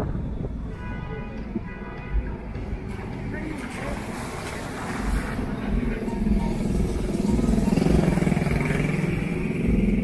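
Small motorcycle engine passing along the street, growing louder from about halfway through to a peak near the end, over background voices.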